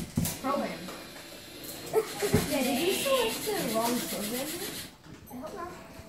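Children's voices talking indistinctly, with a couple of short knocks early on and about two seconds in, dropping quieter near the end.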